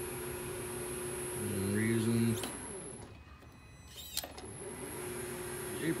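Shenwai SW-900B lathe's three-phase motor, driven by a VFD, running with a steady hum and a high electronic whine, then stopping quickly about two and a half seconds in on a tight deceleration setting. A click about four seconds in, then the motor ramps back up and runs steadily again.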